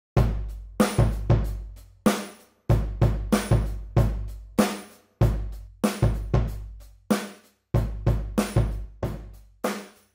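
Addictive Drums 2 software drum kit (Blue Oyster kit) playing a slow hip-hop beat of kick, snare, hi-hat and cymbal. The pattern stops briefly and restarts a few times, with short gaps about two, five and seven seconds in.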